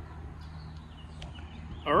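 Outdoor background: a steady low rumble with a few faint high chirps. A man's voice begins near the end.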